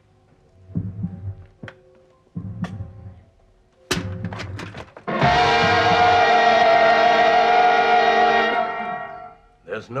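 A loud, steady horn blast held for about three seconds, then fading, over soft eerie background music with a few dull thuds and clicks before it: the huntsman's hunting horn of the legend.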